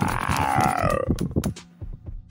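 Cartoon sound effect: a buzzing, warbling tone that wavers and falls in pitch and cuts off about a second in, followed by a few sharp clicks.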